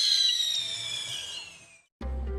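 Intro sound effect: a high whistling tone with overtones that slowly falls in pitch and fades away.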